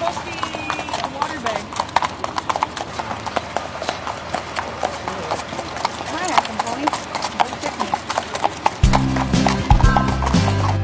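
Hooves of several walking horses clip-clopping on packed dirt close by, a steady irregular patter of sharp strikes, with voices in the background. Music comes in near the end.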